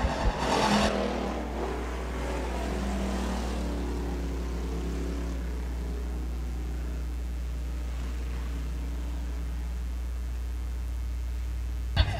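A field of dirt-track stock cars racing in a pack after the green flag, their engines heard as a steady drone under a constant low rumble, a little louder in the first second.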